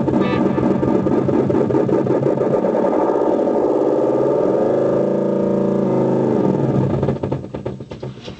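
Guitar delay pedal with its feedback turned up, running away into self-oscillation: a loud, dense droning build-up of repeats that warps in pitch around the middle, then dies away in the last second.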